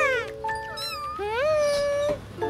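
A cartoon kitten meowing: a long meow that rises and then holds through the second half, over light background music.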